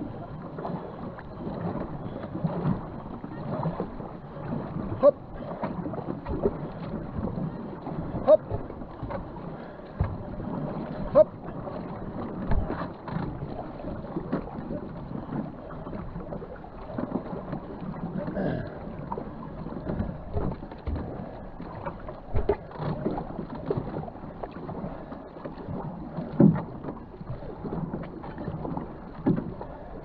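Two-person racing canoe paddled at race pace: paddle strokes splashing and pulling through the water against a steady wash of water noise, with a few sharp knocks now and then.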